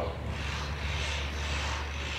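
Steady room tone in a pause between voices: a constant low hum under an even hiss.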